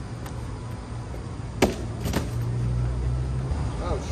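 Low, steady rumble of a motor vehicle that swells about two and a half seconds in and cuts off abruptly just before the end. Two sharp clicks come near the middle.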